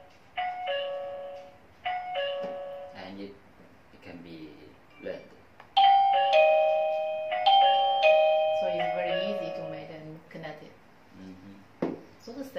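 Plug-in wireless doorbell chime playing a two-note ding-dong twice in quick succession. A few seconds later it plays a louder, longer tune of falling notes in two phrases. This is the chime answering the doorbell button's presses while the two are being paired.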